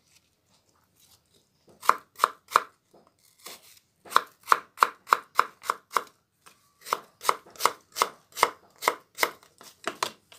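Kitchen knife chopping an apple into small pieces on a cutting board: a steady run of sharp knocks, about three a second, starting about two seconds in, with a brief pause partway through.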